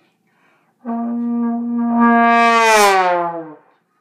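Trombone playing one long note of about three seconds, starting just under a second in. It swells louder and brighter, then slides down in pitch as it fades out.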